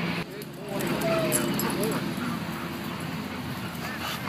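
A dog whimpering a few short times.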